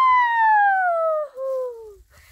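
A woman's long, loud whoop of joy: one high cry that slides steadily down in pitch over about two seconds, with a brief catch about halfway through.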